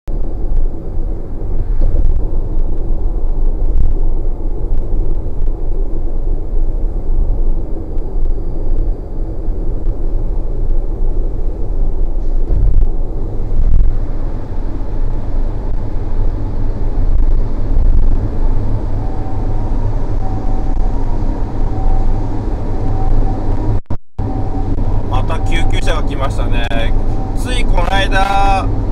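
Steady low road and engine rumble of a car driving on an expressway, heard from inside the car. The sound cuts out briefly a few seconds before the end.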